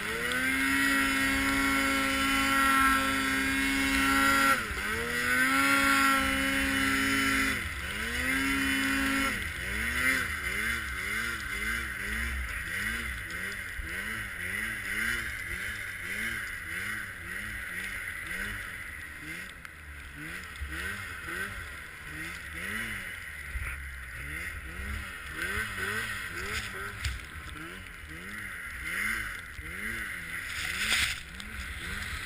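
Arctic Cat M8 snowmobile's two-stroke engine pulling at high revs through deep powder. The revs dip briefly twice and come back. About nine seconds in they drop, and the engine then surges up and down over and over, about once or twice a second, as the throttle is worked.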